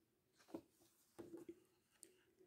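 Near silence, broken by a few faint soft clicks as the page of a hardcover picture book is turned: one about half a second in, then a short cluster a little past one second.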